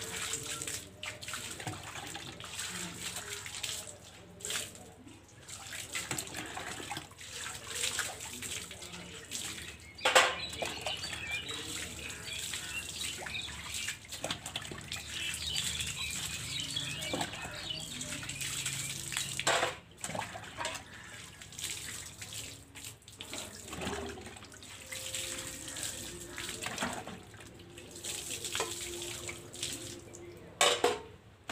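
Water poured from a plastic mug over stainless steel bowls and plates, splashing onto a wet concrete floor while the dishes are rinsed, with a few sharp knocks of the steel dishes, the loudest about ten seconds in.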